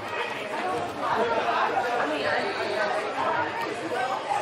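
Indistinct chatter of many voices at once, players and spectators talking and calling out, echoing in a large indoor hall; it grows louder about a second in.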